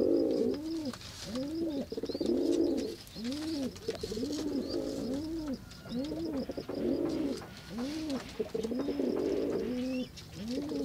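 Dove cooing: a steady run of low, rounded coos, each rising and falling in pitch, repeated about once a second. A faint, rapid, high ticking runs behind the coos.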